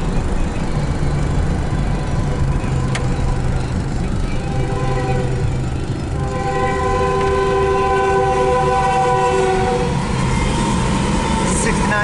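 Air horn of a Union Pacific GE C44ACM locomotive blowing for a grade crossing: one long multi-note chord from about four seconds in to nearly ten seconds, sounding more faintly again near the end. A steady low rumble runs underneath.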